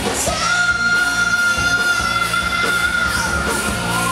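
Live rock band playing, the singer holding one long high note over guitars, bass and drums, starting just after the start and breaking off near the end.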